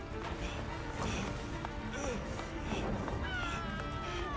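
Soundtrack music over a dense, rumbling background of sound effects, with a long, slowly falling cry starting about three seconds in.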